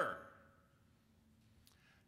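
A word trailing off into the room's echo, then near silence: room tone in a church sanctuary, with one faint click near the end.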